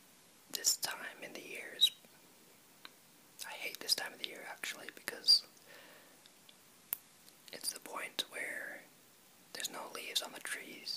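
A person whispering in four phrases separated by short pauses.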